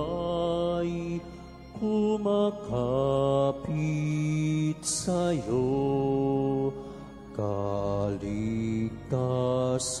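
A slow hymn sung in Tagalog, with long held notes that glide between pitches over a steady, sustained low accompaniment.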